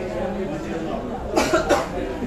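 A person coughing twice in quick succession, about a second and a half in, over low background chatter.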